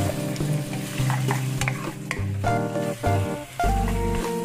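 Pork cartilage pieces sizzling in a nonstick wok as a wooden spatula stirs and scrapes them in repeated strokes, with background music playing over it.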